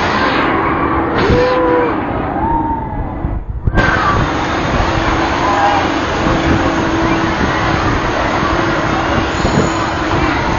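Wind rushing over a phone microphone on a fast-moving amusement ride, a dense steady noise over a low hum from the ride, with a brief dropout about three and a half seconds in.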